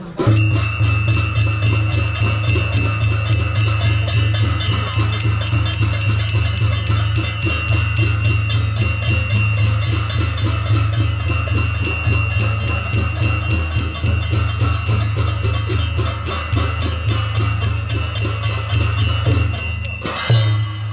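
Newar traditional ensemble of two-headed barrel drums played in a steady fast rhythm, with a continuous high metallic ringing of small cymbals over it; it starts abruptly.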